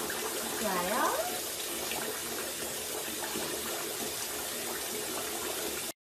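Bath tap running steadily into a filled bathtub, with one short rising vocal sound about a second in. The water sound cuts off suddenly just before the end.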